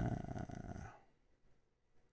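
A man's drawn-out, creaky 'uhh' hesitation sound lasting about a second.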